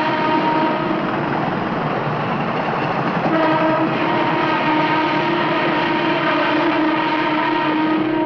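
Express train running at speed with its horn sounding over the rush of the train: one blast for about the first second, a short one a little past three seconds, then a long held blast from about four seconds on.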